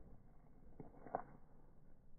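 Near silence, with two faint short clicks a little past the middle, the second the louder.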